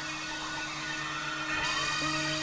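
Experimental synthesizer drone music: two steady low tones held under a hiss of noise, with a tone rising and levelling off about one and a half seconds in.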